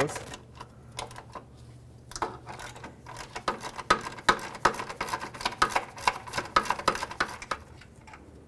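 Hand socket ratchet clicking in quick, uneven strokes as a bolt on the steering rack bracket is backed out, starting about two seconds in and stopping just before the end.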